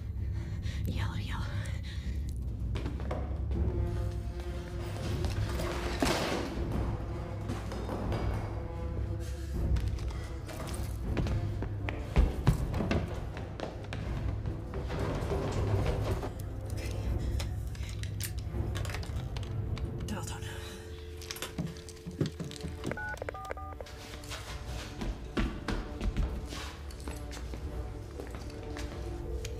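Suspenseful film score of low sustained drones and swelling tones, with a sharp thud about twelve seconds in.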